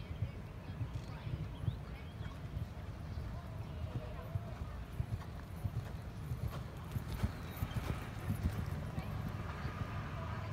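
Hoofbeats of a horse cantering on soft sand arena footing: a steady run of low thuds.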